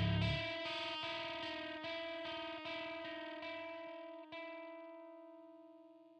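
Outro music: a sustained, effects-laden electric guitar chord pulsing evenly and slowly fading away, with a low hit at the start.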